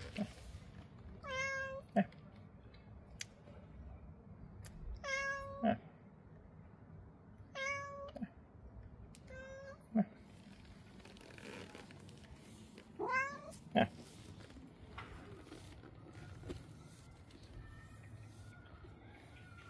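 Tabby domestic cat meowing four times, with a few seconds between calls; the last meow rises in pitch.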